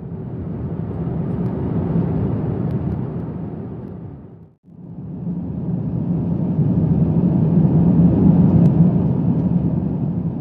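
Jet airliner cabin noise in flight: a steady rumble. It fades out and back in about halfway through.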